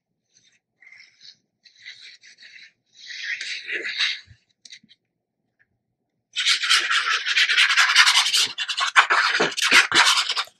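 Tip of a squeeze bottle of liquid glue dragged across patterned paper as glue is laid down: a few short, faint scratchy strokes in the first seconds, then a louder continuous rasping from about six seconds in as lines and zigzags of glue are drawn over the sheet.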